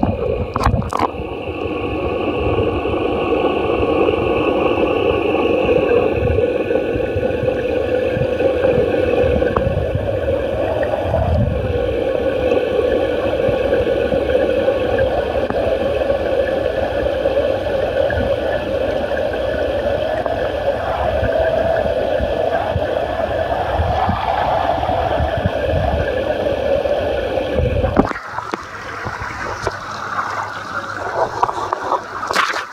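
Steady rush of running water, with a low rumble underneath. Near the end the rumble drops away and the sound thins.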